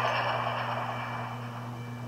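A wash of noise fading slowly away, over a steady low hum.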